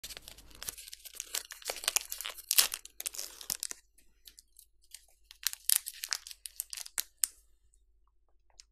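Gold foil wrapper of a chocolate bar being torn and crinkled open, with dense crackling close to the microphone. It comes in two spells with a pause of about a second and a half in the middle.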